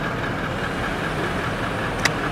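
Steady mechanical hum of a Toyota Land Cruiser with its V8 engine running while its height-adjustable suspension is lowered.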